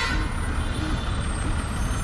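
Heavy loaded lorry's diesel engine running, a steady low rumble, as the truck creeps slowly through a tight bend.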